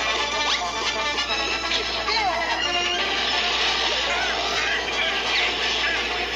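Cartoon soundtrack music playing from a television, busy and continuous, with several sliding notes.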